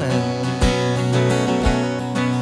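Acoustic guitar strumming chords, with an electric guitar playing along, in an instrumental passage of a folk song. There are accented strums about once a second.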